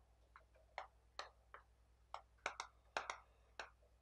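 Chalk writing on a blackboard: a faint, irregular string of short clicks and taps as a word is written.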